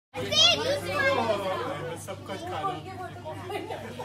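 Several people talking at once in the background, no single voice clear, with one high-pitched voice loudest in the first second. A steady low hum runs underneath.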